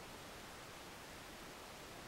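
Quiet room tone: a faint, steady hiss with no distinct sound in it.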